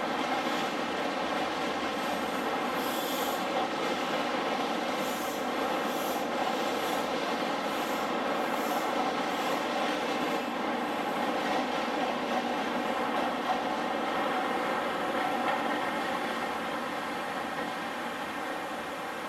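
Network Rail New Measurement Train, an HST with Class 43 diesel power cars, running past: a steady diesel drone with the coaches rolling by. Brief high-pitched wheel squeals come and go in the first half, and the sound eases off near the end as the train pulls away.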